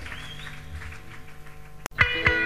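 Lull between two songs of a live rock recording: a low steady hum from the band's amplifiers with faint wavering high sounds, then a single sharp click near the end where the tracks are joined.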